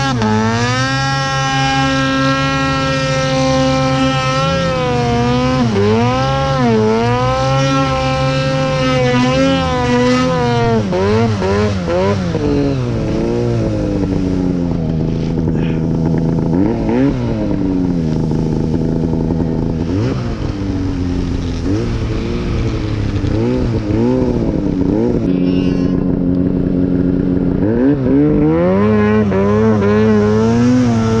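Arctic Cat Alpha One mountain snowmobile's two-stroke engine revving hard through deep powder, its pitch rising and falling over and over. It runs high for the first ten seconds or so, settles lower through the middle with short surges, and climbs again near the end.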